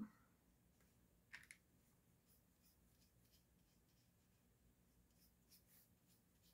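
Near silence, with a few faint strokes of a paintbrush on watercolour paper; the clearest comes about a second and a half in.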